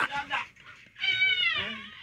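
A single high-pitched, drawn-out cry with a slightly falling pitch, sounding like a meow, about a second in, after a brief bit of voice and a short pause.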